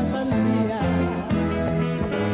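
Colombian tropical dance music played by a live band: bass notes and guitar over a steady percussion beat.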